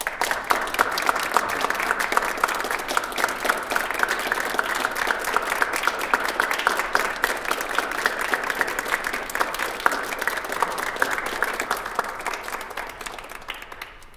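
Applause: many people clapping, starting suddenly and tapering off near the end.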